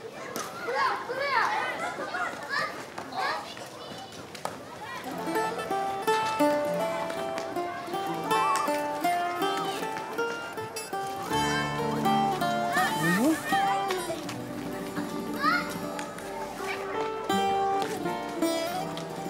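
Children shouting and playing. About five seconds in, a melodic music score comes in and carries on under the children's voices.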